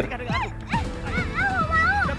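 A dog barking and yipping several times, with a longer wavering yelp near the end, over background music.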